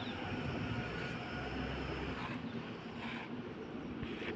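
Steady low background rumble, with a few faint clicks.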